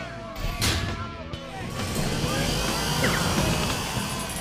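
Cartoon soundtrack music and sound effects: a short whoosh-like noise about half a second in, then dense, loud music swelling up about two seconds in.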